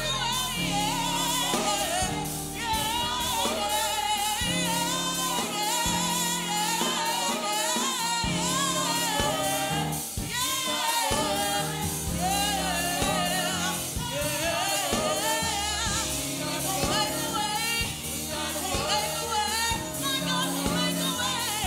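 Youth gospel choir singing live, a female lead singer out front with the choir behind her, over a band accompaniment with held bass notes and a steady beat.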